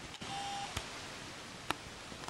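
Quiet room tone with a couple of faint clicks and a brief faint beep-like tone early on.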